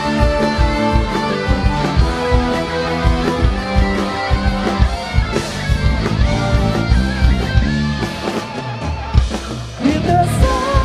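A rock band playing live in an instrumental passage: electric guitars and bass over a steady drum-kit beat.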